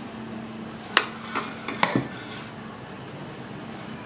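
Steel ladle clinking against a stainless-steel idli plate while batter is spooned into its cups: four short metallic clinks between about one and two seconds in, the first the loudest.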